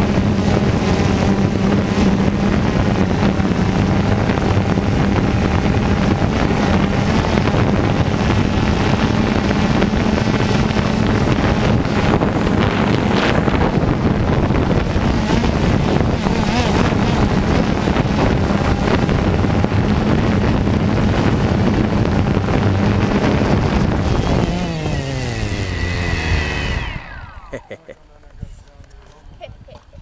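DJI Phantom 2 quadcopter's four electric motors and propellers running steadily at a hover, a loud even hum heard from the drone's own mounted camera. About five seconds before the end the pitch falls as the motors spin down, and they stop.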